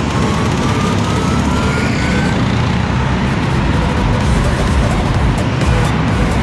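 Go-karts running around an indoor track out of sight, their sound echoing through the hall, with one kart's note rising as it accelerates before fading out about two seconds in. Music plays over the steady track noise.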